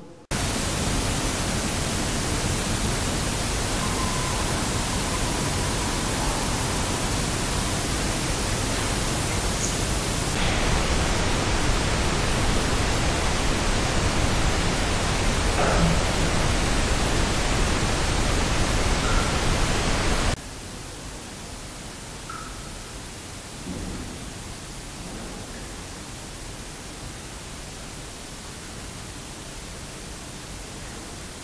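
Loud, even hiss of heavily amplified audio-recorder noise played back as EVP clips, changing abruptly in level and colour about ten seconds in and dropping much quieter about twenty seconds in. A faint cough is buried in the hiss about sixteen seconds in.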